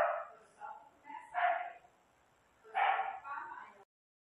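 A dog barking off-mic, four or five short barks spread over a few seconds, stopping abruptly near the end.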